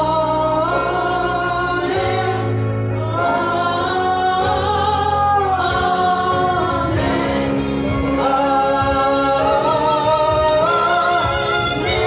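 Gospel worship song sung by a man and a woman through microphones, with long held notes.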